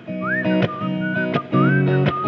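Electric guitar strummed in chords, a strike about every 0.7 s, with a man whistling a melody over it that slides up into its held notes twice.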